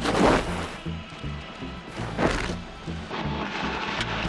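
Background music with a steady low beat, with a loud sweeping hit at the start and another about two seconds in.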